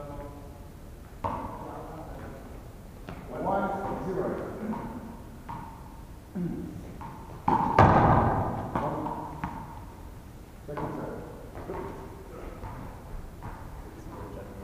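One-wall handball rally: a string of sharp slaps and thuds as the ball is struck by hand and hits the wall and floor, each ringing out in the large gym hall, with a loud burst near the middle. Players' voices come in between the hits.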